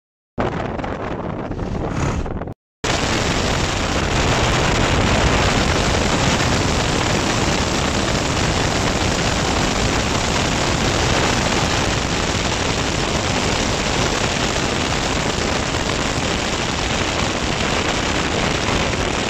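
Loud, steady rush of wind and road noise from a moving car, with wind buffeting the phone's microphone. It drops out briefly about two and a half seconds in.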